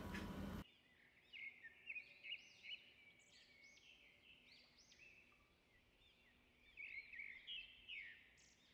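Near silence with faint, short bird chirps, in a cluster early on and again near the end.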